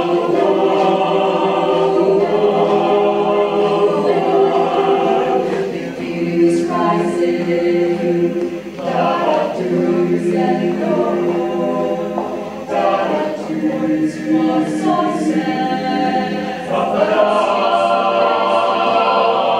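Mixed-voice choir singing a cappella in sustained, changing chords, with crisp sibilant consonants cutting through now and then.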